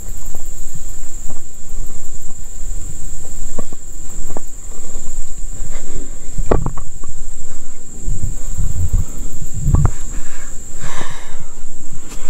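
Insects droning on one steady high note, with footsteps and handling knocks as someone walks over a pine-needle forest floor; two louder thumps come about six and a half and ten seconds in.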